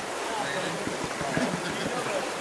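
Steady hiss of running water, with light swishing of water in a plastic gold pan as it is tilted.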